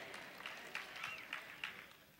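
Faint, scattered applause from a church congregation.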